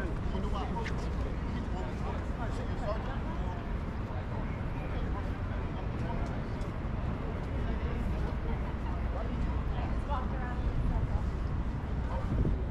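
City street ambience: a steady low rumble of traffic with scattered, indistinct voices of passers-by.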